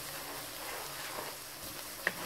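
Onions, ginger-garlic paste and ground spices sizzling steadily as they fry in hot ghee in a pan.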